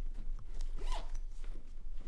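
A suitcase zipper pulled in one quick run about halfway through.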